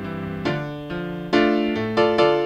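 Background music on a piano-like keyboard, single notes struck about every half second, getting louder over the last part.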